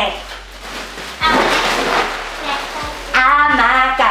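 A long hissing breath of helium drawn from a foil balloon, from about a second in, then a high, squeaky helium voice shouting and laughing near the end.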